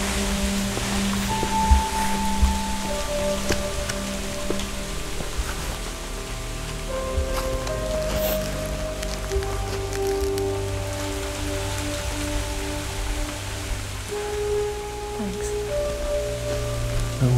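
Steady rain falling, under a slow film score of long held notes.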